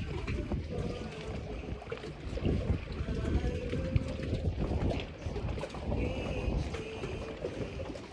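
Wind buffeting the microphone, an uneven low rumble that keeps on without a break.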